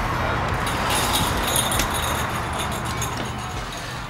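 Steady outdoor background noise at a shop entrance, an even rush with a low rumble that fades slightly near the end, with a few faint clicks as the glass door is pulled open.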